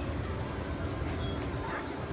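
Outdoor amusement-park background noise: a steady low rumble with faint distant voices, heard before the balloon ride starts moving.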